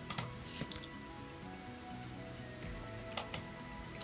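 Quiet background music with steady held tones, and a few faint clicks.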